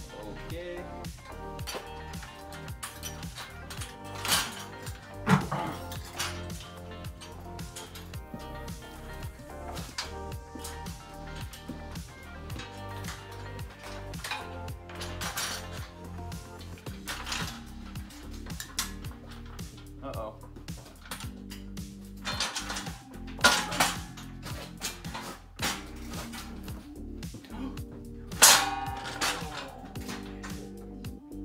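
Background music with a steady beat, over which a heavy steel trailer frame clanks and knocks as it is lifted and turned over. A few sharp metal clanks stand out, about 4 and 5 seconds in and again near 23 and 28 seconds, the last the loudest.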